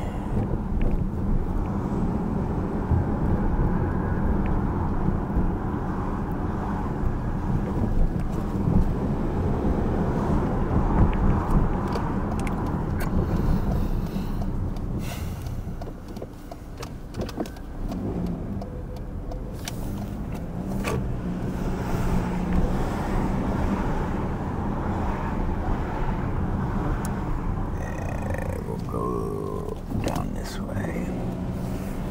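Car driving slowly on city streets, heard from inside the cabin: a steady low rumble of engine and tyres that eases off for a few seconds about halfway through.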